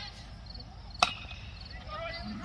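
A baseball bat hitting a pitched ball: one sharp crack about a second in.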